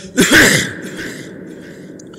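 A man coughs once, loudly, into a stage microphone about a quarter second in. The cough is carried by the PA, with a short ring after it.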